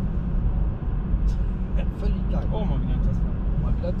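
Steady low road and tyre rumble inside the cabin of a moving car.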